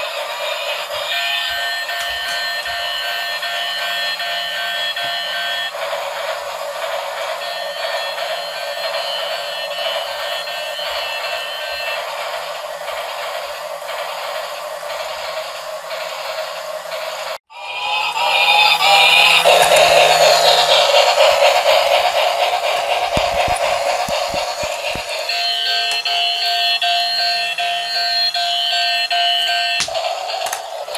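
Battery-powered toy bubble locomotive playing a tinny electronic tune in repeating phrases over a steady whir of its motor. The sound drops out for a moment about two-thirds of the way in and comes back louder.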